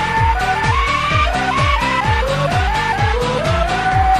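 Electronic dance remix: a kick drum whose pitch drops on each hit, about twice a second, under a boy's screaming voice sampled and pitched into a melody, each note sliding upward.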